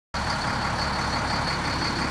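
2004 Ford F650 dump truck's engine idling steadily, with a thin, steady high-pitched whine over it.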